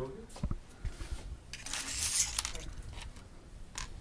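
Light handling noise of small plastic medical supplies on a tabletop: a few soft clicks and knocks, with a rustle about two seconds in.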